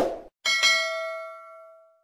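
Subscribe-button sound effect: a short click, then a bright notification-bell ding about half a second in that rings on and fades out over about a second and a half.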